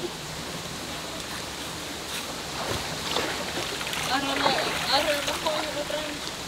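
River water running steadily over rocks, with voices talking over it in the second half.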